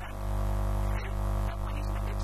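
Loud, steady low electrical hum with a buzz of evenly spaced overtones, typical of mains hum picked up by the recording chain, with faint talk beneath it.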